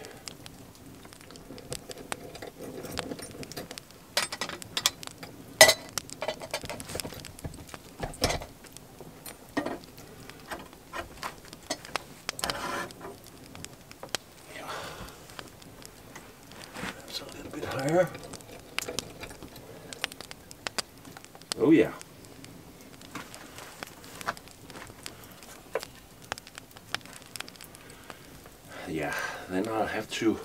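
Wood fire crackling in an open hearth, with scattered sharp clicks, and a few knocks as a metal pot is handled and set over the flames.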